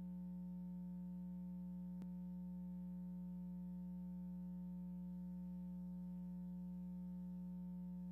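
Steady low electrical hum, one unchanging low tone with fainter overtones, with a faint click about two seconds in.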